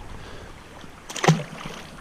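Shallow stream water running steadily over stones, with a brief voice sound a little over a second in.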